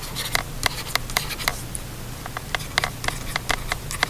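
Stylus tapping and scratching on a tablet surface while writing by hand: irregular sharp clicks, about four a second, with a short lull about halfway, over a low steady hum.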